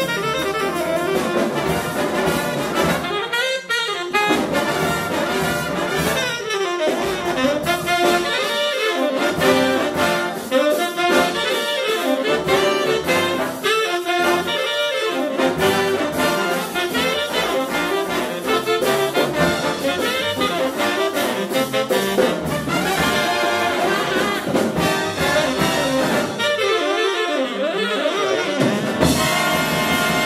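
A jazz big band playing a fast swing chart live, with saxophones, trumpets and trombones over piano, bass and drums. The low end drops out for short breaks several times.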